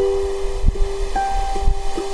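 Ukulele playing slow single notes, the same note plucked again every half second or so, with a higher note joining about a second in. A low wind rumble on the microphone runs underneath.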